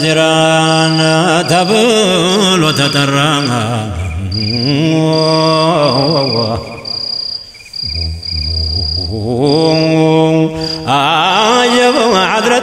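Menzuma, Ethiopian Islamic devotional chanting: long, drawn-out wordless vocal notes that slide slowly between pitches, with a brief softer dip just past the middle.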